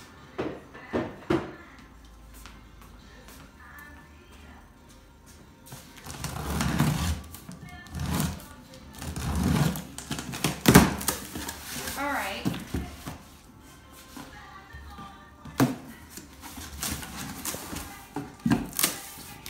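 Scissors slitting the packing tape on a cardboard box and the flaps being pulled open: a series of loud cardboard scrapes and rustles between about six and thirteen seconds in. Soft background music plays throughout, with a few light knocks near the start and end.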